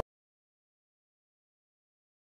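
Dead silence: the sound track is muted, with nothing audible.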